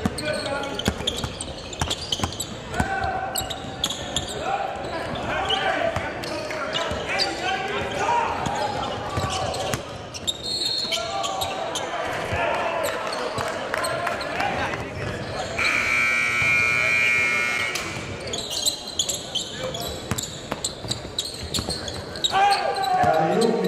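A basketball bouncing on a hardwood gym court, with many dribbles and knocks, among the chatter of players and spectators in a large echoing hall. About two-thirds of the way through, a steady buzzing tone sounds for about two seconds.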